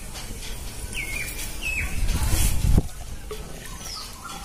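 A small bird chirping twice, about one and one-and-a-half seconds in, each a short falling call. A brief low rumble follows about two seconds in.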